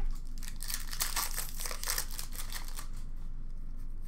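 Hands crinkling the wrapper of an Upper Deck hockey card pack and handling the cards, a dense crackling rustle that dies away about three seconds in.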